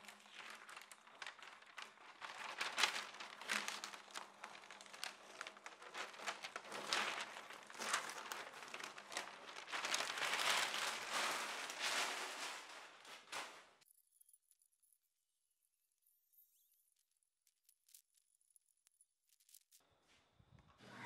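Brown masking paper and masking tape being peeled off a freshly spray-painted panel and crumpled, with dense crinkling and tearing rustles. It stops abruptly about two-thirds of the way through, leaving near silence.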